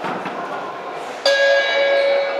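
Boxing ring bell struck once, about a second in, then ringing on with a steady metallic tone: the signal to start the round.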